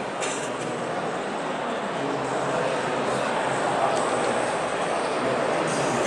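Steady background noise of a busy exhibition hall: an even hum with no distinct events, getting slightly louder.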